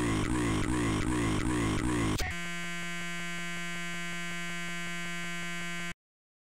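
Glitched, distorted electronic audio stuttering in a rapid repeating loop. About two seconds in it switches suddenly to a steady harsh electronic buzz, which cuts off abruptly near the end.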